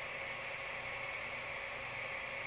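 Steady low hiss with a faint high whine and no distinct events: background noise between words.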